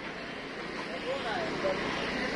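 Steady outdoor street background noise, with a person's voice speaking from about a second in.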